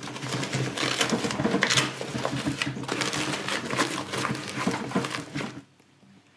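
Quilted padded divider being pushed into a camera bag and pressed onto its Velcro: continuous scratchy rustling of fabric and hook-and-loop crackle, which stops shortly before the end.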